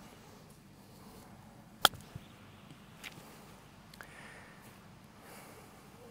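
A single crisp click about two seconds in: a pitching wedge striking a golf ball on a short chip shot.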